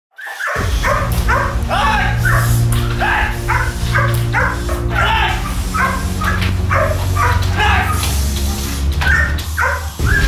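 German Shepherd barking repeatedly, about twice a second, at a decoy threatening it with a stick in protection training. The barks start about half a second in, over background music with a steady bass line.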